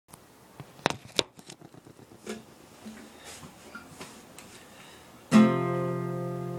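A few sharp knocks and clicks, then about five seconds in a single acoustic guitar chord is strummed and left to ring, fading slowly.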